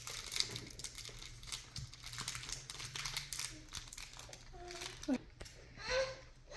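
Chocolate bar wrapper crinkling with many small irregular crackles as a child's fingers peel it open.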